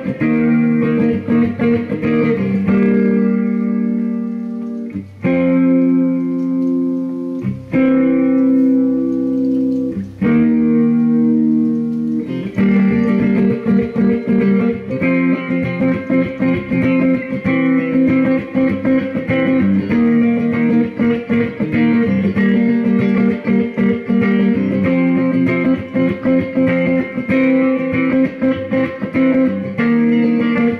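Electric guitar playing the song slowly: a run of long chords each left to ring for about two seconds, then from about twelve seconds in a steady, rhythmic picked part.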